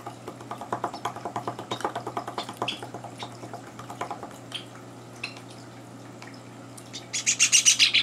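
Java sparrows chirping: rapid runs of short chirps through the first few seconds, then scattered chirps, and a loud, fast burst of high chirps about seven seconds in.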